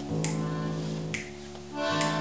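Accordion playing held chords, with two short sharp ticks about a second apart keeping the beat.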